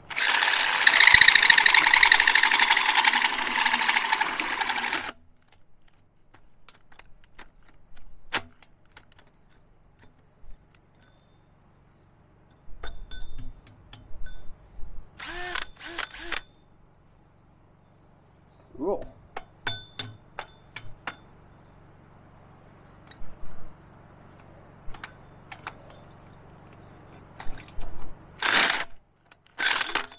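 Cordless drill driving a hole saw through a steel well casing: a loud grinding cut for about five seconds, then short bursts and clicks from about thirteen seconds on as the cut is worked further. The drill is straining and overheating on this job, and the owner fears it is ruined.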